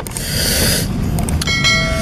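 Subscribe-button sound effect: a short whoosh, then about a second and a half in a ringing bell ding over another whoosh.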